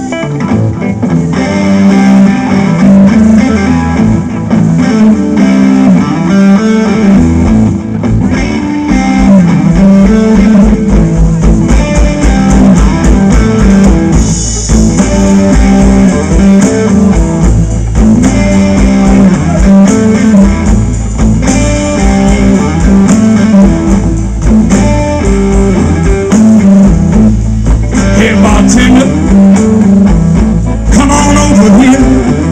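Live blues band playing, led by an amplified electric guitar, with bass and drums; the low bass line comes in strongly about seven seconds in.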